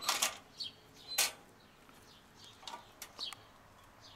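Two short rushes of noise, one at the start and one about a second in, then faint chirping of small birds.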